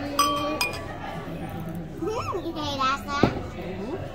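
A beer glass and a wine glass clinking together in a toast, one short bright ring just after the start. A child's high voice then rises and falls in pitch, and a sharp knock comes near the end.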